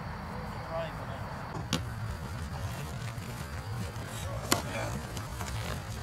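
Faint, distant voices over a steady low rumble, with two sharp clicks: one just under two seconds in and another about four and a half seconds in.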